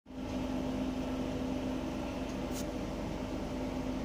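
Steady mechanical hum of a running appliance in a small room, holding one low tone throughout, with a faint click about two and a half seconds in.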